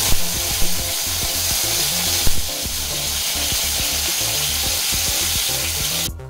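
Masala-coated beef pieces and curry leaves frying in hot oil in a nonstick pan, sizzling loudly and spattering, with a few sharp pops in the first couple of seconds. The sizzle cuts off abruptly at the end.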